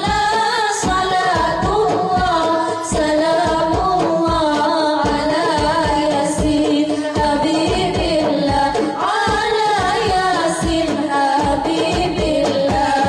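A group of girls singing sholawat (Islamic devotional songs) together into microphones, amplified, over a steady beat.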